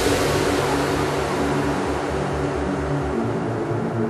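Electronic dance music at a breakdown. The kick drum has dropped out, and a high noisy wash fades away over a pulsing low synth line.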